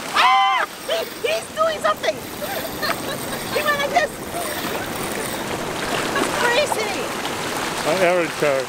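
Short, high excited cries and laughter from a few people, over a steady wash of surf and wind at the water's edge.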